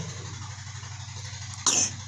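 A steady low hum under a pause in the voice, with one short breathy sound from a person about 1.7 seconds in.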